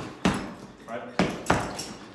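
Several gloved punches landing on an Everlast heavy bag, each a sharp thud, coming in two quick pairs as shoulder-whirl punches are thrown.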